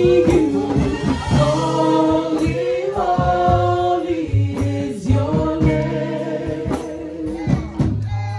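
Worship music: voices singing together in long, held phrases over a steady low note, with percussion strikes here and there.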